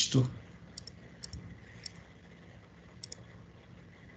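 A few faint, sharp clicks of a computer mouse, some in quick pairs, spaced irregularly over a quiet room background.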